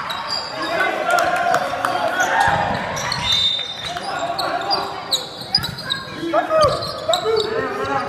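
Basketball game on a hardwood gym floor: the ball bouncing with low thuds, sneakers squeaking in short glides, and players' voices calling out.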